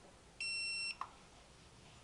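Hubsan Zino remote controller giving a single steady high beep, about half a second long, as it powers on after a long press of its power button. A short click follows.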